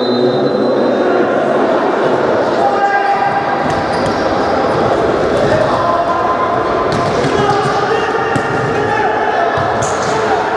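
Futsal ball being kicked and bouncing on a hard sports-hall floor: several sharp impacts, the last a shot near the end. Players' shouts and crowd voices fill the large hall throughout.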